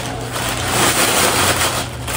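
Rustling and crinkling as clothes are handled and pulled from a shopping bag.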